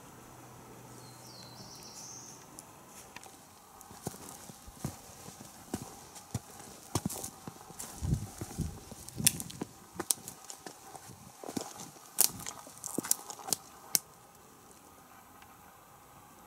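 Footsteps on a rocky mountain trail: irregular sharp taps and clicks on stone with a few dull thuds, starting about four seconds in and stopping abruptly about two seconds before the end.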